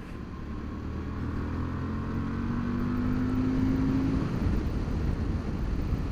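Honda Varadero 1000 XL V-twin motorcycle engine accelerating out of a bend, its note rising and growing louder, with a gear change about four seconds in. Wind rushes over the helmet-mounted microphone.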